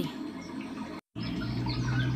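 Recording background noise between narrated lines. A soft hiss cuts out suddenly to total silence about a second in, then comes back as a steady low electrical hum with hiss.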